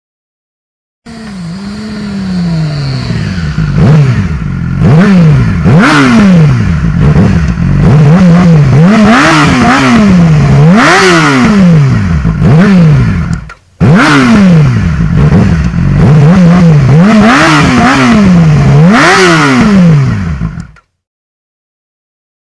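Yamaha R6 inline-four sport-bike engine breathing through a Toce T Slash slip-on exhaust, revved in repeated quick throttle blips, its pitch rising and falling again and again. There is a brief break just after the midpoint, where a second stretch of revving begins.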